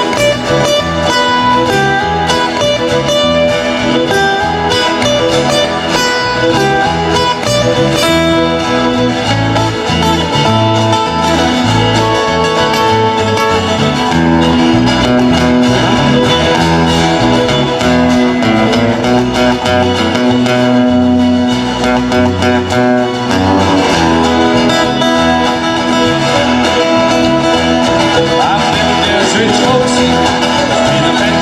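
Instrumental break in a country song played by a small live band: acoustic guitars picking and strumming over a steady, rhythmic bass line.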